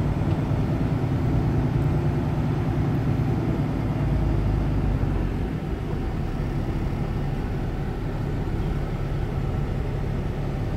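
Semi truck's diesel engine running at low speed, heard from inside the cab as the truck rolls slowly across the yard into a parking spot. The engine note eases off slightly about halfway through.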